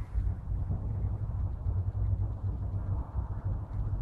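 A steady low rumble of background noise, with no distinct snip standing out.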